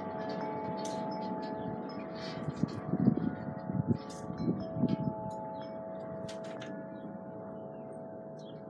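Wind chimes ringing, several fixed tones sounding together and fading slowly, with a few low rumbles about three to five seconds in.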